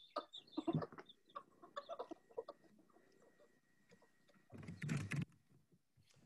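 Bantam chickens clucking softly while pecking at black soldier fly larvae, a noise their keeper takes for extreme happiness. The clucks are scattered through the first couple of seconds, with a short louder burst near the end.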